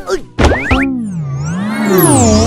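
Children's cartoon intro jingle distorted by a warbling pitch effect. About half a second in it starts again sharply with quick upward glides like a boing. It then holds a tone that sweeps down and back up in slow waves.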